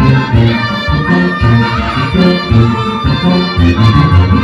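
Loud dance music from a live band played through stage loudspeakers, with a bouncing bass line of about two notes a second under a sustained melody.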